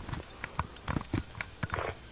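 Soft, irregular taps and knocks with a brief rustle near the end: handling noise from a handheld camera being held and adjusted up close.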